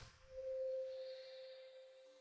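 Music cuts off, then a single clear, steady ringing tone comes in and slowly fades away.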